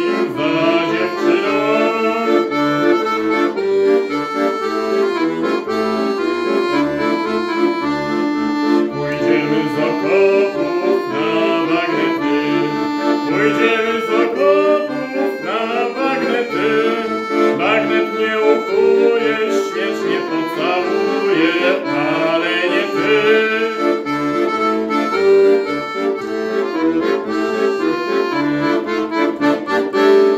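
Weltmeister piano accordion playing a melody on the treble keys over a steady rhythmic bass accompaniment.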